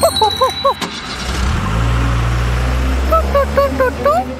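Cartoon car-engine sound effect: a loud, steady low rumble with a hiss over it for about two seconds. Short, squeaky sing-song vocal blips come just before it and again near the end.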